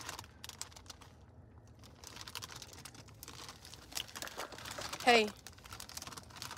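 Crinkly plastic snack bag of Cheetos Puffs being handled and squeezed by a small child, with irregular soft crackles. A short voice sounds once about five seconds in.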